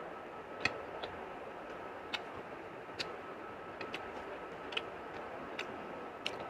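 Eating sounds of a person eating rice and chicken by hand: short, sharp smacking clicks at irregular intervals, about once a second, over a steady background hiss.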